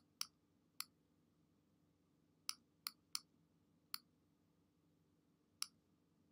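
About seven short, sharp computer mouse clicks, spaced unevenly, while a keyframe curve is being adjusted in editing software. Between the clicks there is only faint room tone.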